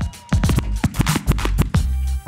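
Hip-hop battle beat from the DJ, with turntable scratching: a fast run of short cuts after a brief dip at the start.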